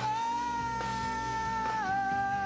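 A singer holds one long high note over soft worship music, sliding down a little near the end and holding the lower pitch.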